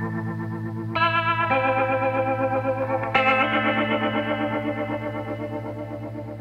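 Background music: sustained effects-laden guitar chords with a wavering shimmer, changing chord about a second in and again about three seconds in.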